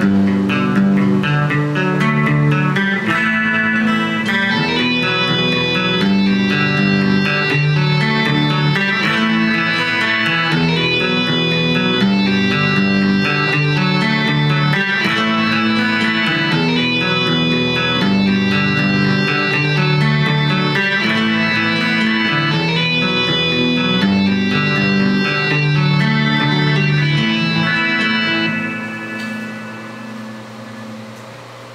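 Ibanez electric guitar tuned to E standard playing a rhythm part along with a Guitar Pro backing track; the music fades out near the end.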